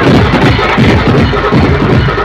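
Loud banjo party band music blaring from horn loudspeakers, with a heavy, steady drum beat.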